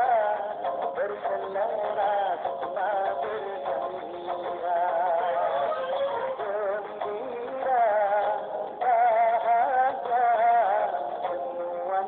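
Singing voice carrying a melody with strong vibrato, in phrases with short breathing gaps.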